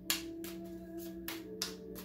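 A deck of tarot cards being shuffled by hand: a few brisk strokes of the cards, the sharpest just after the start. Under it, steady held tones of ambient background music, like a singing bowl.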